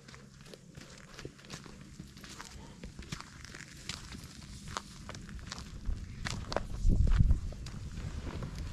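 Footsteps crunching on dry eucalyptus leaves and bark litter, an irregular run of short crackles, with a louder low rumble about seven seconds in.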